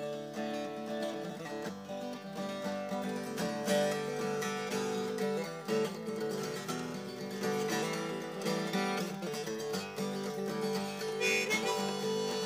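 Acoustic guitar strummed and picked, with a harmonica playing the melody over it: an instrumental song intro.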